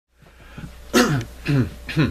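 A man clearing his throat three times in quick succession, each a short voiced burst falling in pitch.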